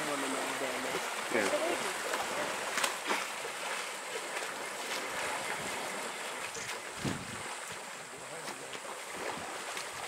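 African elephants splashing and sloshing about in a muddy waterhole as they wallow: a steady wash of water noise with scattered short splashes.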